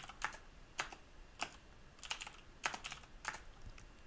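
Computer keyboard typing: irregular single keystrokes, a few a second, with short pauses between them.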